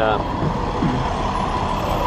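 Steady noise of passing street traffic, heard through the car's open driver's door.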